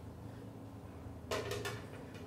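Steel frying pan set back down on a gas burner's grate after the oil is swirled, a brief clatter of a few metal knocks about a second and a half in, over a faint low hum.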